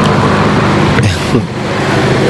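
A motor vehicle passing close by, its engine hum and road noise loud and steady, dipping briefly about a second in.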